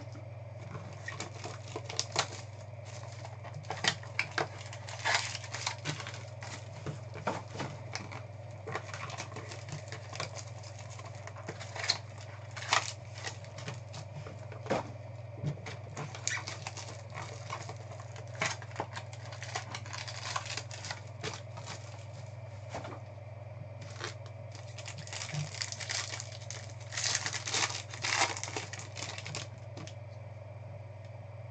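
Trading card packs being opened by hand: foil pack wrappers crinkling and tearing, and cardboard pack boxes and cards being handled. The sounds come as irregular sharp rustles and clicks, busiest near the end, over a steady low hum.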